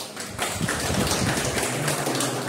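A small group of people applauding, a dense patter of hand claps that builds up about half a second in.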